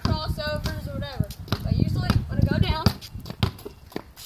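Basketball being dribbled on a concrete driveway, a few sharp bounces under a child's talking.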